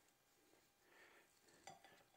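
Near silence: faint kitchen room tone, with a soft rustle about a second in and a light click near the end, from hands working seasoning into raw chicken.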